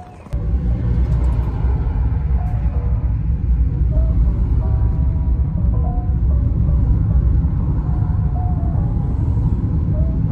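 Steady low rumble of a car's engine and road noise as heard inside the cabin while driving, starting suddenly about a third of a second in. Background music plays over it.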